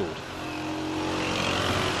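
City street traffic heard from inside a moving car: a steady rush of engine and road noise that swells over the first second and then holds.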